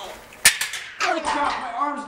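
A single sharp metal clank about half a second in as a barbell is set back down onto the steel power rack's hooks.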